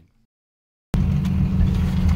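Truck driving across a field: a steady low rumble of engine and tyres that starts suddenly about a second in, after near silence.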